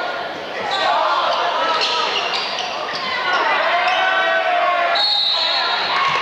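Basketball game in a gymnasium: the ball bouncing and sneakers squeaking on the hardwood court over crowd chatter from the stands. A short, high, steady whistle sounds about five seconds in.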